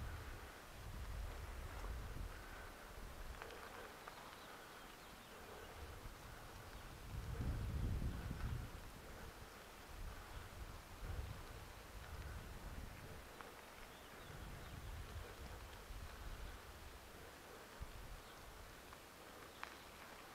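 Wind buffeting the microphone of a camera on a moving bicycle: a low rumble that swells and fades, strongest about seven to nine seconds in.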